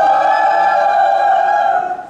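A group of young people shouting one long, high vowel together as a team cheer, held at a steady pitch and cutting off sharply at the end.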